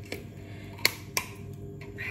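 Two sharp plastic clicks about a third of a second apart, from the cap of a gallon plastic juice jug being twisted open.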